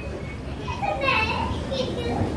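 Speech: children's voices talking, over a low steady background rumble.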